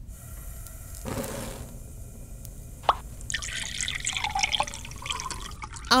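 Liquid in a steel pot on a lit gas burner: a soft rush about a second in, a single sharp click near the three-second mark, then a busy patter of dripping and spattering liquid.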